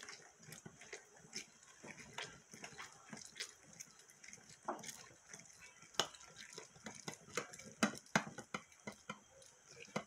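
Orange halves being twisted and pressed on a stainless steel hand citrus reamer: wet squelching and squeaking of the fruit against the ridged cone, with irregular clicks and taps of the metal juicer.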